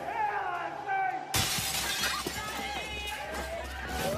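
A sudden crash of shattering glass about a third of the way in, with ringing that carries on for a second or more afterwards, over a woman's wordless cries.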